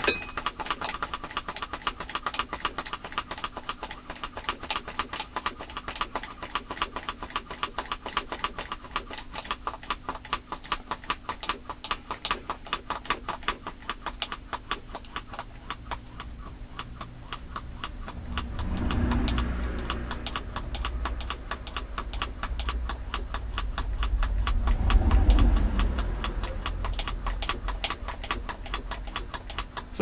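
Hand-operated brake bleed vacuum pump being squeezed over and over in a rapid, regular clicking rhythm, drawing a vacuum on a jar. Two louder, low, rumbling swells rise and fall about two-thirds of the way in and near the end.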